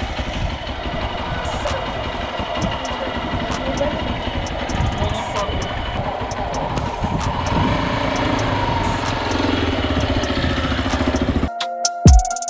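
Hero Xpulse 200's single-cylinder four-stroke engine idling steadily up close, with people talking around it. Near the end it cuts off suddenly and electronic music starts.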